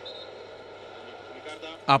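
A short pause in a man's radio talk, filled by a steady, even background noise; his voice comes back near the end.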